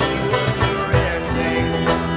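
An acoustic folk band playing live: strummed acoustic guitars and banjo over a steady rhythm, the sound filled out by several other string instruments and an accordion.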